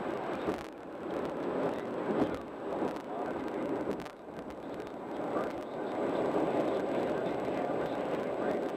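Road and tyre noise of a car cruising at highway speed, a steady rushing noise that swells and dips.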